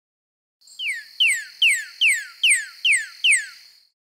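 Recorded northern cardinal song: a run of about seven loud, clear whistled notes, each sliding down in pitch, repeated at an even pace of roughly two to three a second, over a steady high hiss.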